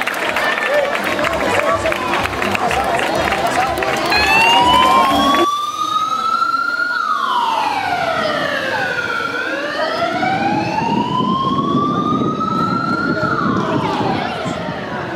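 Spectators clapping and chattering for the first few seconds, then a siren wailing, rising and falling slowly over about three seconds each way.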